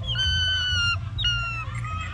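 A changeable hawk-eagle gives two loud, shrill calls: the first lasts about a second, the second is shorter, and each slides slightly down in pitch. A softer rising note follows near the end.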